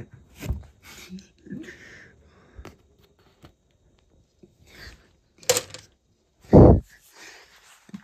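Hands handling a glass marble and a cardboard model: light clicks and rustles as the marble is picked up. About five and a half seconds in comes a sharp noise, and a second later a loud, low burst that is the loudest sound here.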